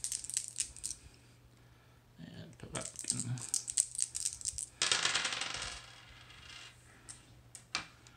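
Dice being rattled in a hand and thrown, clattering onto a tabletop: scattered sharp clicks, then a longer rattle about five seconds in, then a few more clicks near the end.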